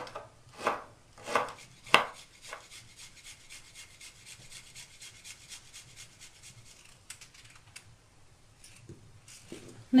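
Kitchen knife chopping greens and garlic on a wooden cutting board: about five sharp chops in the first two and a half seconds, then a long run of faint, quick, even taps.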